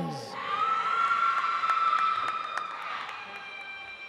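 A single long, high held cheer from the audience, a steady note lasting about four seconds, with a few scattered claps.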